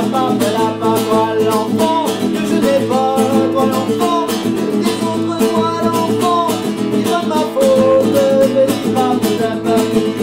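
Acoustic guitar strummed steadily, with a man singing a melody over it.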